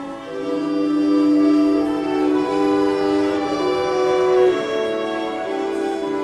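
An orchestra playing a slow passage, led by bowed strings with violins on top: long held notes that move from one pitch to the next every second or so. The loudness dips briefly right at the start, then the strings swell back in.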